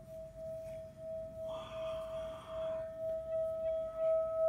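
Handheld metal singing bowl made to sing by a wooden mallet rubbed around its rim: one steady ringing tone with a fainter higher overtone. The tone wavers in loudness about twice a second and slowly builds.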